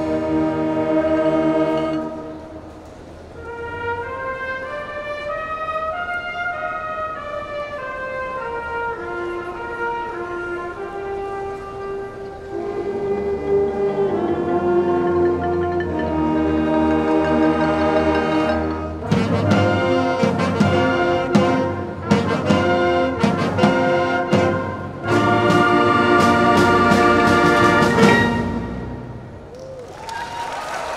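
High school concert band of woodwinds, brass and percussion playing: a held chord, then a quieter passage of moving melodic lines that builds up. About two-thirds of the way in, drum and cymbal hits come in, and the piece ends on a loud full chord shortly before the end.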